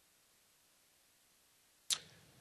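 Near silence with faint room tone, then one sharp click near the end, after which the background hiss rises.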